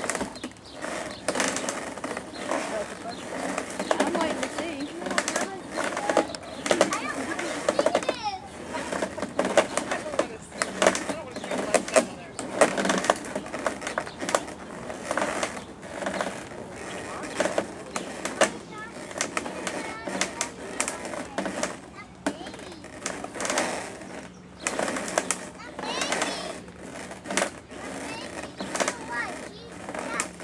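Indistinct chatter of onlookers throughout, with irregular scraping and knocking as a Clydesdale colt rubs its rump against a fence rail to scratch an itch.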